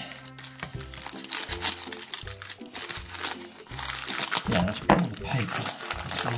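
Greaseproof paper lining a loaf tin crinkling and rustling as hands squish soft dough into it, over a background music track.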